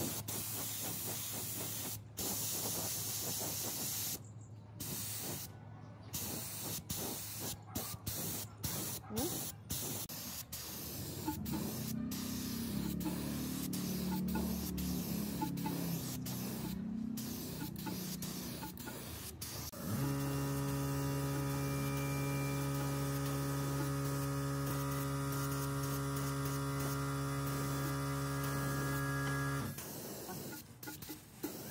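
Air spray gun hissing in short bursts that start and stop many times as paint is sprayed. About two-thirds in, a loud, steady electric hum starts up over it and runs until it cuts off at the very end.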